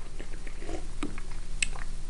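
A person drinking from an aluminium soda can: soft swallowing and mouth sounds with a few faint clicks, one sharper near the end.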